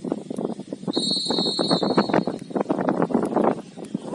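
Referee's whistle blown once for the kickoff: a single shrill blast of just over a second, starting about a second in, over a constant crackling background.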